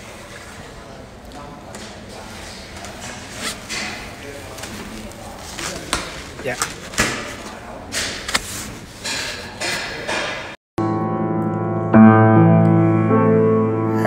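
Rustling and scattered knocks from a handheld phone in a large room, with a brief spoken word partway through. After a short break near the end, a grand piano is played in slow notes and chords, louder than what came before.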